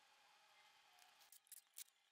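Near silence: a faint steady hiss, then a few light sharp clicks in the last half-second.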